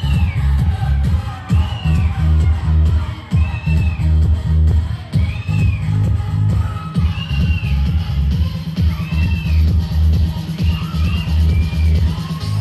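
Loud electronic dance music with a heavy pulsing bass beat and a short synth figure recurring every couple of seconds.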